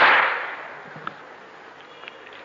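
One sharp collective slap of many hands striking at once, the chest-beating (latm) that keeps time in a Shia lamentation chant, dying away over about a second.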